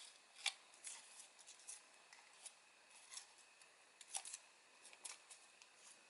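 Faint crinkling and scattered soft ticks of a sheet of origami paper being folded and creased between the fingers.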